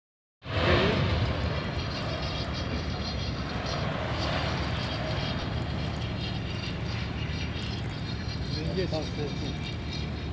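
Steady low engine or machinery rumble with a hiss over it. A man's voice says one word near the end.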